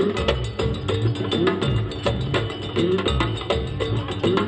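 Live Spanish folk band playing an instrumental passage: a steady knocking percussion rhythm over bass guitar, with short sliding pitched tones. A brief laugh comes near the end.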